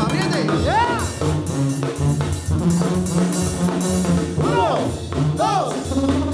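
Live banda music: brass over a steady tuba bass line with drum hits, and several high calls that rise and fall over it.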